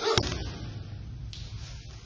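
A thrown aikido partner hitting the mat in a breakfall: one sharp slap and thud just after the start, then dying away.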